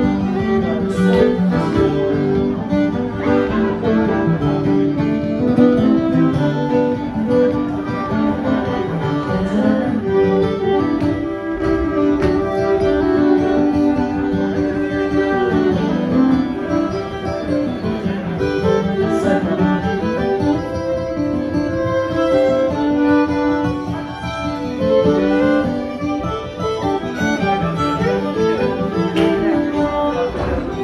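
Two fiddles playing a lively contra dance tune over acoustic guitar accompaniment, live and unamplified-sounding in a hall.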